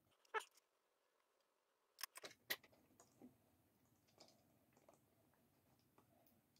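Mostly near silence with a few faint, sharp clicks and taps from handling a small plastic-and-metal model locomotive as it is unhooked and set back onto the track: one tick early, a quick cluster of clicks about two seconds in, then a few fainter ones.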